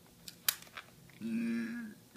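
A few small plastic clicks from handling the battery compartment on the underside of a digital kitchen scale, the sharpest about half a second in. Then a short hummed "mm" from a person's voice, about a second long.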